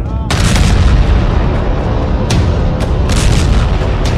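Heavy booms and several sharp cracks over a continuous deep rumble, like gunfire and explosions, with music underneath.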